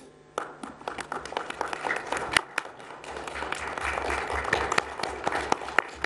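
Audience applauding: dense clapping starts about half a second in, builds, then thins out near the end.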